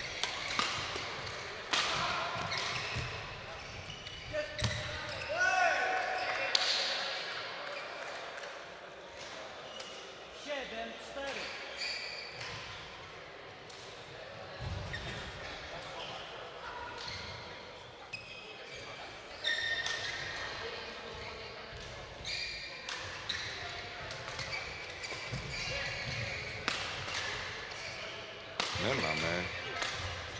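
Badminton doubles play in a large sports hall: sharp racket strikes on the shuttlecock and players' footwork on the court, with players' voices and hall chatter behind. There is a loud shout near the end as a point is won.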